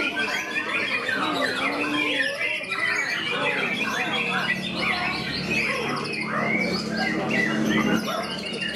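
White-rumped shama singing a fast, varied stream of whistles, warbles and harsh squawks, overlapped by other songbirds and voices. A low steady hum comes in about halfway.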